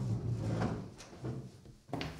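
Scraping and knocking of wooden furniture, a chair pushed back from a desk as someone stands up, with a sharp click about a second in.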